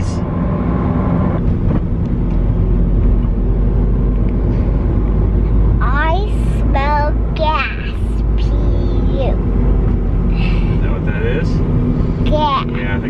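Steady low rumble of road and engine noise inside a moving car's cabin. A child's high voice comes in briefly about six seconds in and again near the end.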